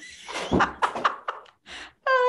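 A series of irregular knocks and rustling handling noises, with a few sharp clicks about half a second and a second in.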